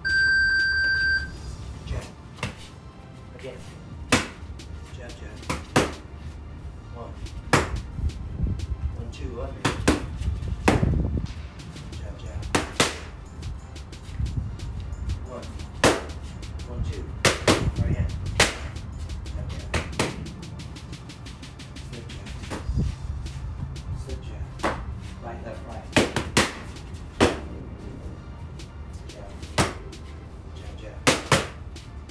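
Boxing-glove punches smacking into focus pads, landing singly and in quick pairs every second or two. An electronic timer beep sounds for about a second at the start.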